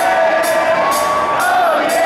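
Live rock band playing: held electric guitar notes over cymbal hits about twice a second, with the crowd cheering and whooping along.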